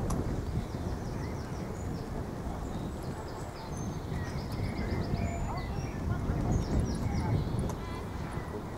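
Birds singing, with several quick runs of short high chirps, over a steady low rumble.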